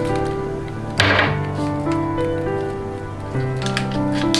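Background music, a melody of single held notes stepping up and down over a low sustained note, with one short noisy thump about a second in.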